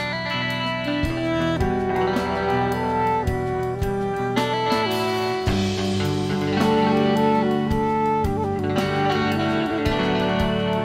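Live indie band playing an instrumental passage: saxophone and electric guitars over bass guitar and drums, with a bright wash swelling about halfway through.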